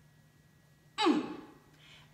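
A woman's short, breathy vocal exclamation about a second in, sliding down in pitch and fading like a sigh.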